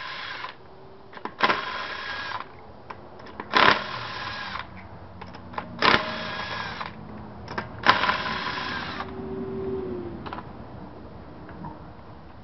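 Cordless impact wrench hammering the wheel's lug nuts loose. It goes in bursts of about a second each, four times about two seconds apart, each burst starting with a sharp crack.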